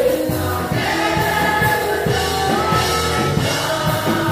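Children's choir singing a gospel worship song together, several voices on held sung lines, over a steady drum beat.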